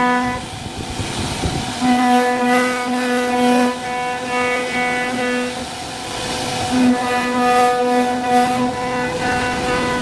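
CNC wood router spindle running at speed, a steady high whine with overtones, while its bit cuts shallow bevelled pockets into a wooden door panel. The whine drops away briefly twice, about a second in and again around six seconds, leaving rougher cutting noise.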